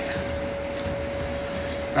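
Steady background machine hum with one held tone, like a running fan or air-conditioning unit, and a faint tick a little under a second in.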